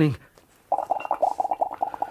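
A rapid, evenly pulsing gurgle of bubbling liquid, starting just under a second in and running on.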